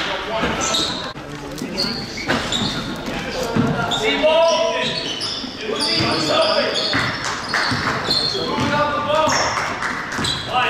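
A basketball being dribbled on a hardwood gym floor, with players and spectators calling out over it in a school gymnasium.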